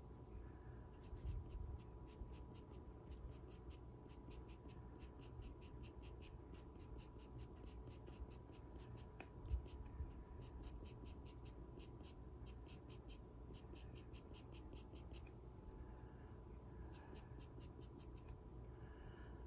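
Ivory pastel pencil scratching on Pastelmat card in short, quick flicking strokes, about four a second, laying in clumps of hair. The strokes come in runs that pause briefly about six seconds in and again near the end. A soft thump comes about halfway through.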